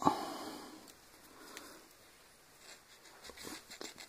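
A knife cutting out a leftover punched-out piece of material: one scraping cut right at the start that fades over about a second, then a few faint small clicks of handling.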